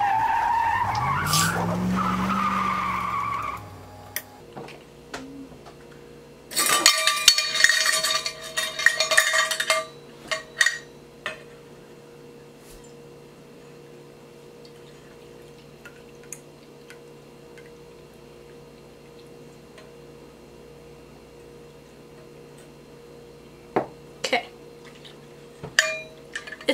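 Spoon stirring against a stainless steel mixing bowl, squeaking with a pitch that bends up and down for the first few seconds. A few seconds later metal measuring cups and a strainer clink and scrape against the bowl for about three seconds, then only a faint steady hum with a couple of clicks near the end.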